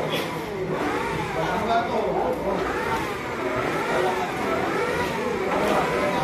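An engine revving up and down repeatedly, about once a second, with voices in the background.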